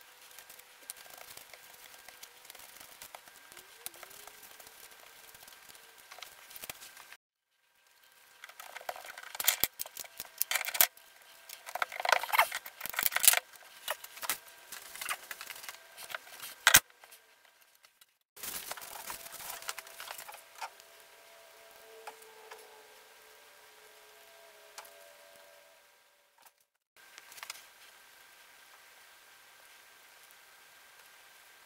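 Light handling sounds at a workbench: a brush working sealant onto a plywood spacer and gasket, with a busy run of sharp clicks and knocks in the middle as the parts and bolts are handled and pressed together.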